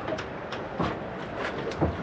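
A series of irregular light knocks and clicks, with a duller low thud near the end, over a steady low outdoor background.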